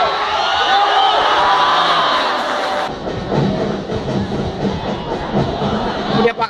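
Football supporters singing and chanting in the stands. About three seconds in, the sound changes abruptly to a lower, rougher crowd noise.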